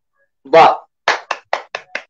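One person clapping by hand, five claps in about a second, applauding a just-finished tabla solo.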